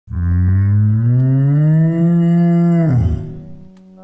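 A cow mooing: one long moo of about three seconds that rises slowly in pitch and drops off at the end, followed by a fainter, shorter tone.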